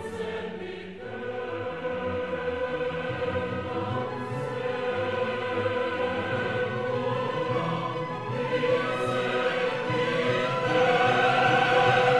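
Choral music: a choir singing long held notes, swelling a little near the end.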